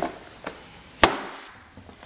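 Cardboard packaging handled on a table: a light rustle and a soft knock, then one sharp knock about a second in as the box is set down.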